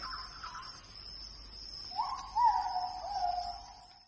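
A bird call: a few slurred whistled notes that begin about halfway in, rise, then step down and fade, over a faint steady high-pitched tone.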